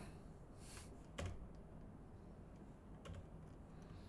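A few faint, scattered computer keyboard clicks over quiet room tone, the loudest about a second in and a small cluster near three seconds.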